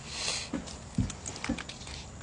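A short breath, then two soft, low thumps about half a second apart.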